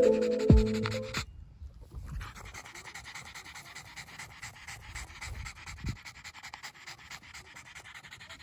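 A fluffy French bulldog panting quickly and evenly, faint. Background music stops about a second in, before the panting is heard alone.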